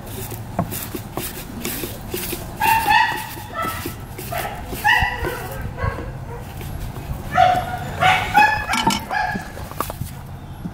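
An animal calling in short pitched cries, in three groups: about three seconds in, about five seconds in, and again from about seven and a half to nine and a half seconds. Light metal clicks of a screwdriver working at a C-clip on the outboard lie under the calls.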